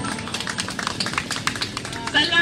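A quick, irregular run of sharp taps or clicks, with little of the music left beneath them.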